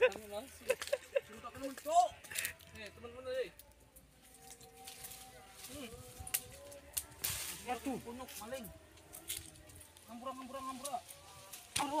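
Voices talking and calling out, hard to make out, with a few sharp clicks and knocks scattered through.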